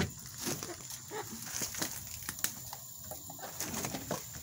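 Domestic hens coming to a pellet feeder: soft, low hen calls and a brief flutter of wings, with scattered taps and knocks on wood. The loudest knock comes right at the start.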